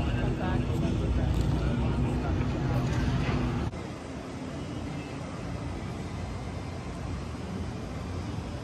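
Outdoor city ambience: a steady low traffic rumble with faint voices in the background. It drops abruptly to a quieter steady hiss about four seconds in.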